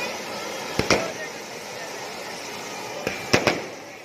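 Ground fountain fireworks spraying with a steady hiss, with firecrackers going off in sharp bangs: two just under a second in and a quick cluster of three past the three-second mark.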